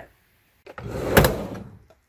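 A whoosh sound effect for a scene transition: a rushing noise that swells, snaps with a click at its peak, then fades away.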